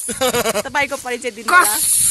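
Voices of a small group of young people talking and laughing close to the phone's microphone, with a short sharp hiss in the last half second.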